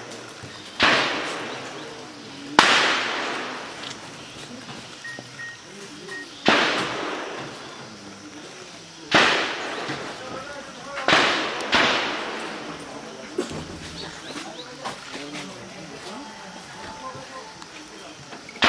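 Gunfire during an armed encounter: single shots several seconds apart, six loud ones, with a pair close together about eleven seconds in. Each shot cracks sharply and rolls away in a long echo.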